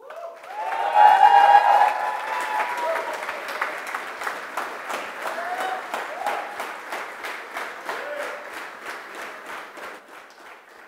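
Audience applauding and cheering at the end of a talk, the clapping swelling in the first second and then slowly thinning out. Loud whoops ring out over the clapping in the first few seconds, with a few shorter shouts later.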